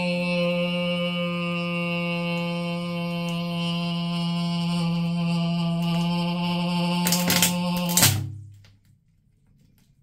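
A loud, steady drone held on one pitch for about eight seconds while a cooked mud crab is pressed down under a fist, hydraulic-press style. Crunching cracks of the crab's shell giving way come near the end of the drone, which then cuts off.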